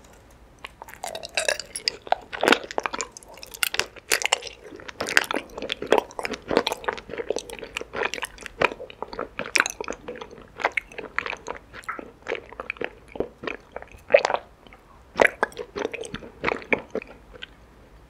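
Close-miked chewing of a mouthful of raw honeycomb with tapioca pearls: a dense run of short mouth clicks and light crunches that starts about a second in and keeps going.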